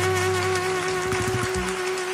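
Mariachi band ending the song on one long held note, the violins sustaining a steady tone while the low bass stops about halfway through, with one last short bass note near the end as the sound fades.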